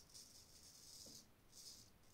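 Faint scrape of a square-nose Gold Dollar straight razor cutting through lathered stubble: one long stroke over the first second, then a short stroke about a second and a half in.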